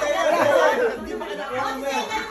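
Several people talking over one another in lively chatter, loudest in the first second.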